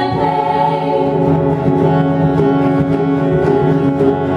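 Live acoustic band music: several women's voices singing long held notes in harmony over acoustic guitar.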